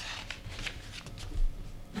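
Papers rustling and being shuffled, in a series of short rustles, with a low thump about one and a half seconds in.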